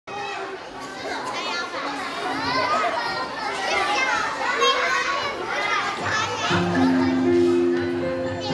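A crowd of young children chattering and calling out over one another in a large hall. About six and a half seconds in, the music for a song starts with held chords and a bass line.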